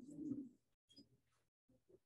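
Near silence between sentences, with a brief faint low murmur in the first half second.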